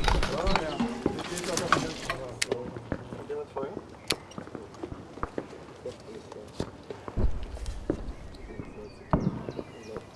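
Men's voices murmuring in the first couple of seconds, then scattered clicks and knocks of handled kit and shuffling feet, with a low thump about seven seconds in.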